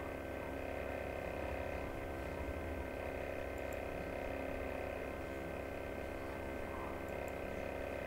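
Steady electrical hum with several constant tones, the background noise of a computer recording setup, with two faint clicks, one about halfway through and one near the end.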